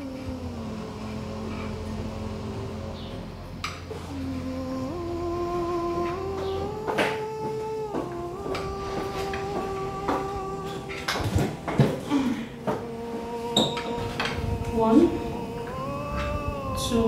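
Background film music: sustained synthesizer chords that step from one pitch to the next. A few short knocks and clicks come in the second half.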